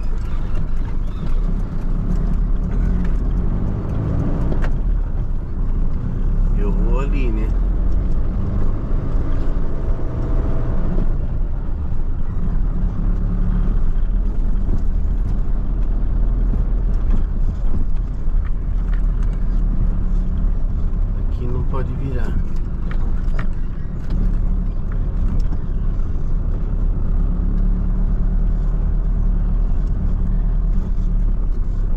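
Steady diesel engine and road noise of a Mercedes-Benz Sprinter van being driven, heard from the cab, with brief gliding pitched sounds about 7 and 22 seconds in.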